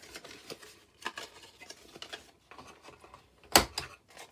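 Cardstock being handled on a cutting mat: light rustles and small clicks, with one sharp knock about three and a half seconds in.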